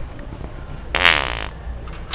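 Loud wet fart sound from the original Sharter handheld fart-noise prank device: one blast about half a second long, about a second in.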